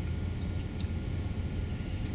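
Steady low room hum, with a couple of faint soft rustles from a sticker sheet being handled.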